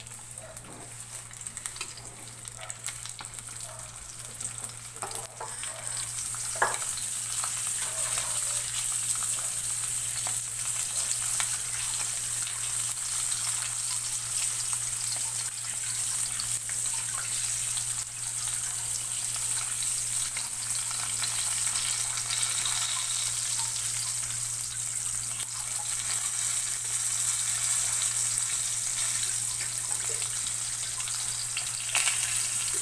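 Two split fish frying in hot oil in a metal pan. The sizzle grows louder about six seconds in and then holds steady. A metal spatula clicks and scrapes against the pan now and then, mostly in the first few seconds.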